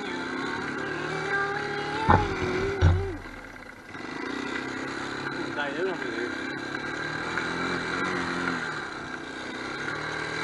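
Small Honda ATV engine running under throttle, its pitch wavering up and down as the throttle changes. Two heavy thumps come about two and three seconds in, then the engine drops off briefly before picking up again.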